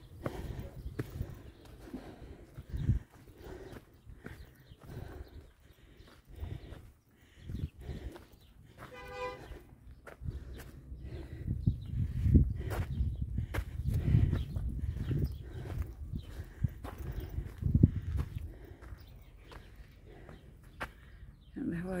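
Footsteps crunching along a dusty dirt and stone path, with wind buffeting the microphone in gusts, heaviest in the second half.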